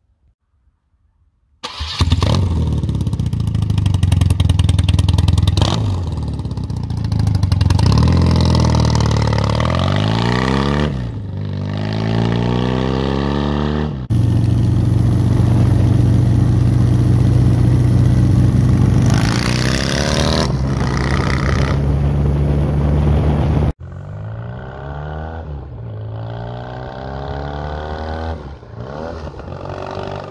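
The flat-twin boxer engine of a 1982 BMW R100 motorcycle running and revving loudly. Its pitch sweeps down and up several times. It cuts abruptly between stretches about 14 and 24 seconds in, and the last stretch is quieter.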